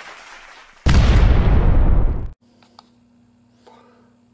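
A loud explosion-like blast begins abruptly about a second in, lasts about a second and a half and cuts off suddenly. A faint steady hum follows.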